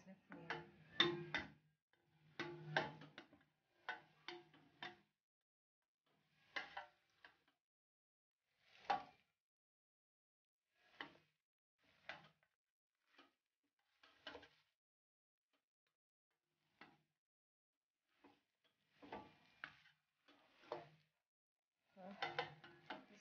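A wooden spoon stirring noodles in a stainless steel pot, with faint, irregular knocks and scrapes against the pot.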